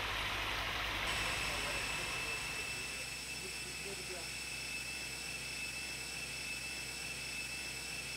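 Abrasive grit blasting through a high-pressure hose: a steady hiss with a thin high whine that sets in about a second in, as old lead-based paint is stripped from cast iron.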